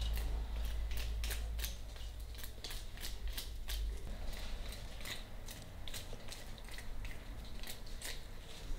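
A run of short, sharp clicks or snips, irregular and a few a second, over a low steady hum.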